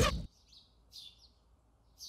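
Two short, faint bird chirps about half a second and one second in, against near silence, just after a sung song cuts off at the very start.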